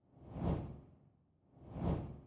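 Two whoosh sound effects for an animated logo intro, each swelling up and fading away, about a second and a half apart.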